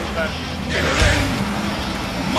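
Studebaker M29 Weasel's engine running as the tracked vehicle ploughs through deep snow, with a swell of louder noise about a second in.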